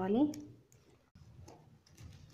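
Faint clicks and rubbing of plastic craft wire strips as they are handled and pulled through a knot while weaving a basket, with a low, steady rumble starting about a second in.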